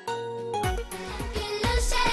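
Upbeat TV jingle music for the break bumper: a held synth chord, then a drum beat comes in about half a second in and the music grows louder.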